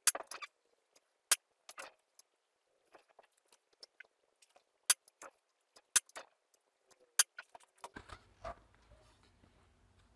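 Sharp metallic clicks and clacks from an Air Arms S400 PCP air rifle being handled and worked on a table, a dozen or so separate knocks spaced unevenly. A low steady outdoor rumble takes over near the end.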